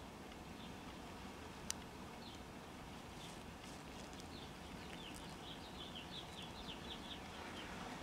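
Faint room hiss with a single sharp click a little under two seconds in, then a run of faint, quick bird chirps in the background through the second half.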